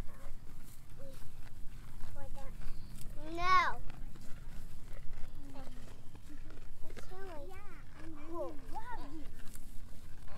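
Young children's high-pitched babbling and squeals in short bursts, with one loud rising-and-falling squeal about three and a half seconds in.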